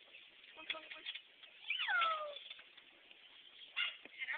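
Cocker spaniel mix puppy whining: one high whine about two seconds in that falls in pitch, with a few shorter sounds before it and near the end.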